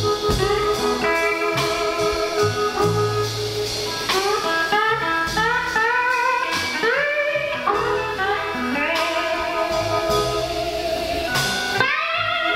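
Live blues band playing: a lead electric guitar solo, many of its notes gliding upward in pitch through the middle, over bass guitar and drums.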